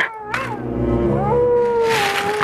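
A long, drawn-out animal-like wail that steps up in pitch about a second in, over a low steady hum, after a short sharp sound at the start.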